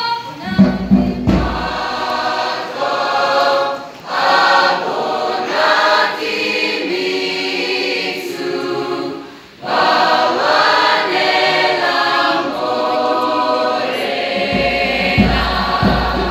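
Mixed school choir singing, with a short break in the sound about nine and a half seconds in. Low thuds come near the start and again near the end.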